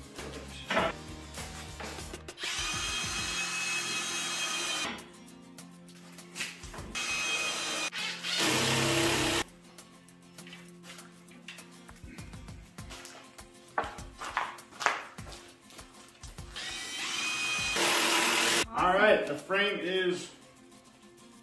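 Cordless drill driving screws into oak frame corner joints, in three bursts: a steady motor whine of about two and a half seconds near the start, a shorter, rougher burst near the middle, and another whine of about two seconds near the end.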